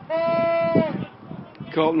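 A trumpet played by a fan in the crowd, blowing one held note for under a second at the start, steady in pitch with a slight bend at each end. A man's voice follows near the end.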